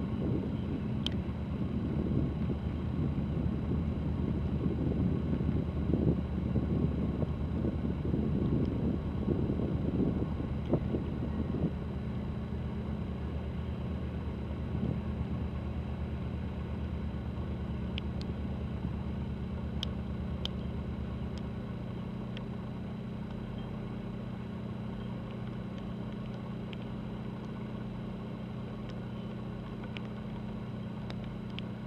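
Steady low drone of ship engines from a cruise ship and its attending tug, several deep tones held at one pitch; the deepest tone drops away about two-thirds of the way through. Wind buffets the microphone for roughly the first twelve seconds.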